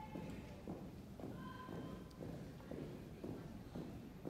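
Marching footsteps of an armed color guard moving in step on a carpeted floor, a steady cadence of about two steps a second.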